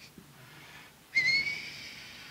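Whiteboard marker squeaking against the board as a line is drawn: one high, slightly rising squeak lasting about a second, starting a little past halfway, with faint rubbing of the marker before it.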